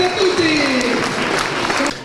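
Audience applauding, with voices mixed in, cut off just before the end.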